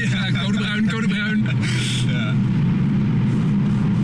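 The Volvo C30 T5's turbocharged five-cylinder petrol engine running at a steady drone, heard from inside the cabin while driving.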